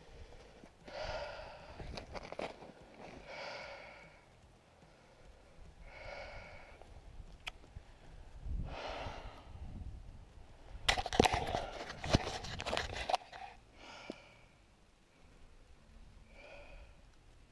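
A man breathing hard, with sighs and exhales every couple of seconds, while hand-lining a fish up through the ice. About eleven seconds in comes a burst of crunching snow and sharp knocks lasting about two seconds, the loudest sound.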